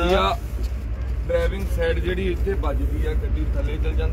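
People talking in short phrases over a steady low rumble.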